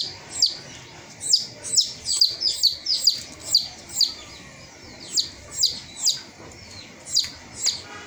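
A bird chirping repeatedly: short, sharp notes that each slide downward, about two a second, keeping up the whole time.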